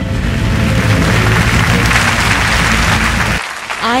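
Audience applauding in a theatre over background music, cut off abruptly shortly before the end.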